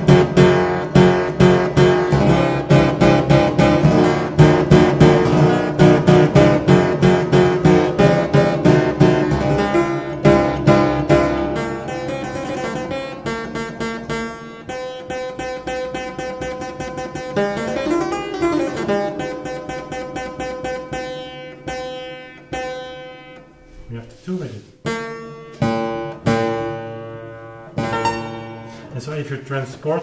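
Historical stringed keyboard instrument played: a quick, dense run of notes for about the first twelve seconds, then slower, sparser notes and a few held tones. The player is checking by ear how a retuned B fits with the other notes.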